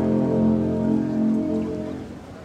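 Concert band playing held chords that fade away near the end.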